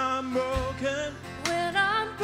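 A worship song sung with instrumental accompaniment.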